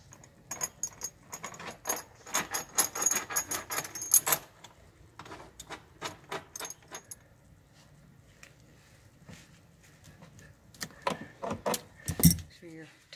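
Metal clinking and rattling of seat-belt anchor hardware (bolt, washers and the belt's steel end bracket) being handled, and a ratchet wrench being worked on the anchor bolt. The clinks are busiest in the first four seconds, thin out after about seven seconds, and pick up again near the end.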